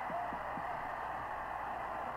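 Stadium crowd cheering a touchdown, a steady roar heard through an old radio broadcast recording with a narrow, muffled sound.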